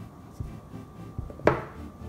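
Cardboard smartphone box being opened by hand: the snug lid is slid up off its base with soft rubbing and light taps, then a single sharp knock about one and a half seconds in as the lid is set down on the wooden table.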